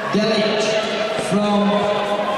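Voices calling out in a sports hall in drawn-out shouts, with a couple of sharp knocks about half a second and a second in.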